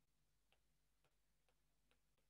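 Near silence with four faint, short clicks about half a second apart: a stylus tapping on a tablet screen while handwriting.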